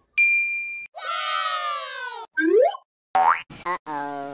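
A run of cartoon sound effects. A short bright ding comes first, then a pitched tone that falls slowly over more than a second. Near the end come several quick upward-sliding boings.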